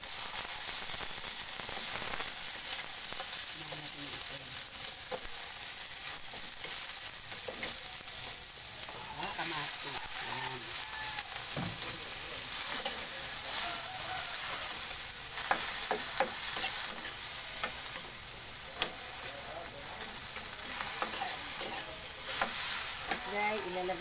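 Onion, tomato and bell pepper sizzling in hot oil in a metal wok. The sizzle starts suddenly as the onion is scraped in, and a metal spatula scrapes and clinks against the pan with short clicks as the vegetables are stirred.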